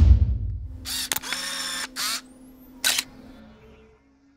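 Camera sound effects in a logo sting: a fading deep hit at the start, then a run of shutter clicks and film-winding whirr, a thin rising whine and a last shutter click, over a faint low tone that fades away.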